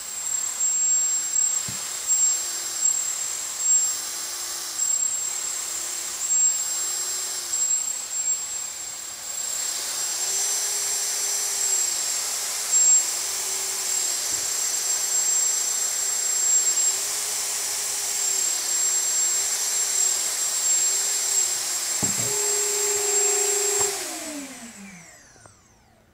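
Unpropped brushless quadcopter motors on SimonK-flashed ESCs whirring under a steady high whine, their pitch rising and falling with repeated throttle blips about once a second. Near the end the throttle is pushed up and then cut, and the motors keep spinning, their pitch falling as they coast down over about two seconds with no braking.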